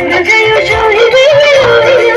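Live band music through a PA: a woman singing an ornamented melody into a microphone over keyboard, electric guitar and a steady drum beat.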